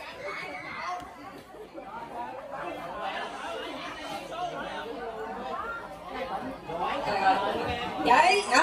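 Overlapping chatter of many people talking at once.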